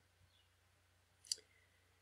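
A single computer mouse click about a second in, against near silence.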